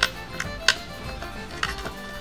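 A few light, irregular metallic clicks as a bolt and washer are fitted by hand through a styling chair's footrest bracket into the seat plate, over faint background music.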